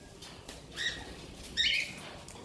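Blue-fronted amazon parrot giving two short calls, the first a little under a second in and the second, louder one near the end.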